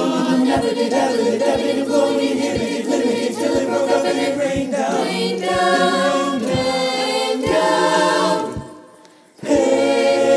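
Virtual high school choir singing a cappella in layered harmony over a steady low beat. The voices cut off suddenly about eight and a half seconds in for a short rest, then come back in together.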